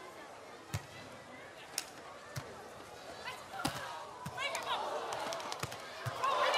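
Beach volleyball rally: about six sharp slaps of hands and arms striking the ball, spaced irregularly through the rally. From about four seconds in, shouting voices and crowd noise build up.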